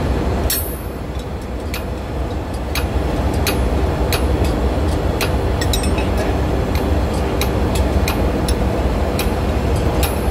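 Steady low drone of running engine-room machinery, with sharp metallic clicks about once or twice a second as a ring spanner is worked on a nut.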